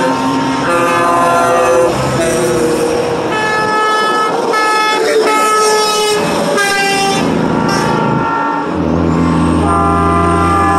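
Truck horns honking again and again as a line of semi trucks passes, held blasts about a second long at several different pitches, often overlapping. Near the end a passing truck's diesel engine drone comes up loud underneath.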